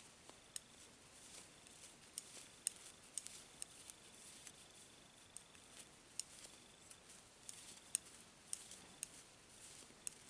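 Thin metal knitting needles clicking against each other as wool stitches are knitted, in quiet, irregular ticks every half second or so.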